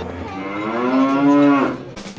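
A child's voice making one long, drawn-out moo like a cow, rising in pitch, held, then dropping away just before the end.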